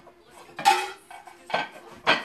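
Dishes and cutlery clinking as place settings are set down on a table: two sharp clinks, the louder about two-thirds of a second in with a short ring after it, the second about a second and a half in.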